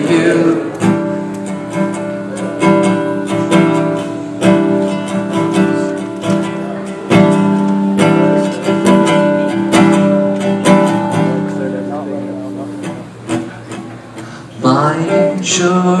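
Steel-string acoustic guitar strummed in a solo instrumental break, each chord struck and left to ring before the next. The guitar fades a little before singing comes back in near the end.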